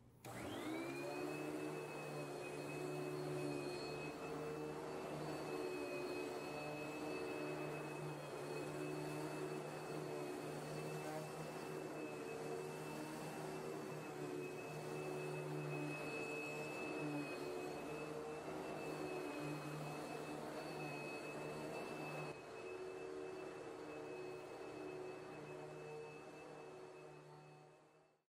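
Vacuum cleaner switched on, its motor whining up to speed within about a second, then running steadily. A few seconds before the end it drops to a quieter level and keeps running.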